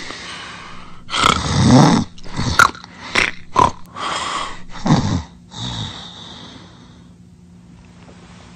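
Loud snoring sound effect: one long snore about a second in, then a run of short snorts, dying away after about six seconds.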